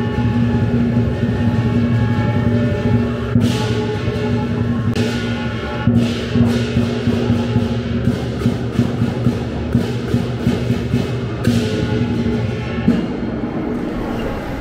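Lion dance percussion: a big Chinese drum beating with crashing cymbals over a ringing gong. From about the middle the strokes come evenly, roughly two a second, with a few louder cymbal crashes.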